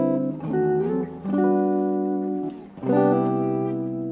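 Clean electric guitar playing a neo-soul chord progression: a few rich chords each left to ring, with a short upward slide about half a second in and a fresh chord struck near the end.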